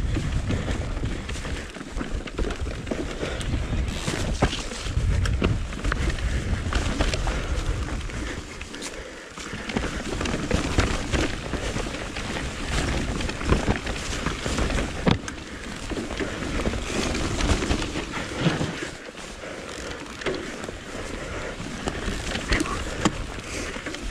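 Mountain bike ridden down a dirt singletrack: continuous tyre noise on the trail with frequent knocks and rattles from the bike over bumps and roots, and a low rumble on the microphone.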